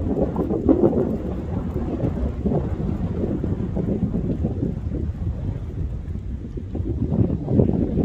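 Wind buffeting the microphone: a low, gusting rumble that swells and eases.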